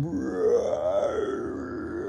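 A man imitating an upset, rumbling stomach with his voice: one long, low, rough growl whose tone rises and falls.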